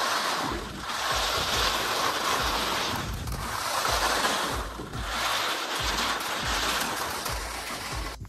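Skis running fast down corn snow: a loud rushing hiss of ski bases and edges on the snow mixed with wind on the microphone, swelling and easing with each turn.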